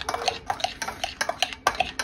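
A metal whisk beating quickly against a ceramic mixing bowl, a rapid run of clinks at about five a second, each with a short ring from the bowl.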